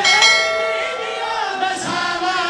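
A bright electronic bell ding that rings out and fades over about a second, the notification-bell sound effect of a subscribe-button animation, laid over men chanting a lament together.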